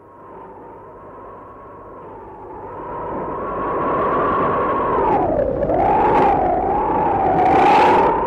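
Radio-play storm sound effect: a howling wind whose pitch wavers and dips about halfway through, over a hiss of rain that swells louder, with a stronger gust near the end.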